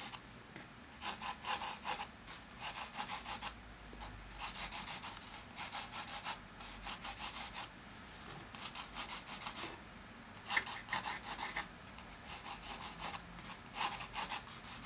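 Pencil scratching on drawing paper as a cube is sketched, in short runs of quick strokes with brief pauses between.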